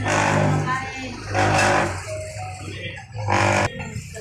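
Loud voices close by in three bursts, over a steady low hum and background music.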